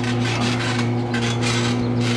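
Trampoline springs and mat rasping in irregular strokes as a man bounces on it, over a steady low hum.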